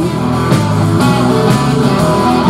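Live rock band playing: electric guitars, bass guitar and drums in an instrumental stretch between sung lines.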